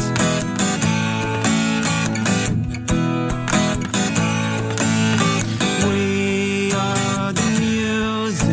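Acoustic guitar strummed steadily, an instrumental stretch of a song with no singing.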